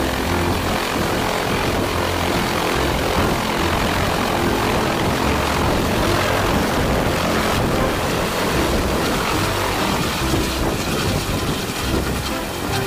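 Yellow ADAC air-rescue helicopter running up its rotor on the ground and lifting off: a loud, steady rush of rotor and turbine noise with a low pulsing underneath.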